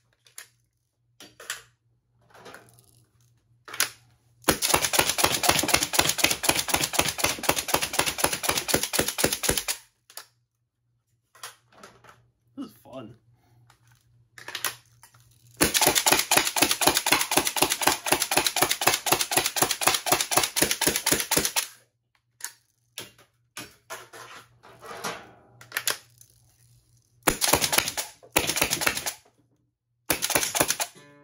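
HPA-powered Nerf blaster firing darts in full-auto bursts, its solenoid valve and pneumatic cylinder cycling with a rapid, even clatter of shots. There are three long bursts: one of about five seconds, one of about six seconds and a short one near the end, with a few single clicks between them.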